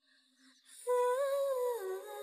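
A single held humming note, likely part of the drama's background soundtrack, starting about a second in after near silence; it rises a little, then drops to a lower pitch near the end, with a faint high shimmer behind it.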